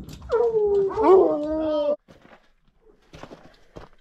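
Hunting hounds howling: long drawn-out calls that slide down in pitch, two voices overlapping about a second in. The howling cuts off suddenly about two seconds in, leaving a few faint scuffs.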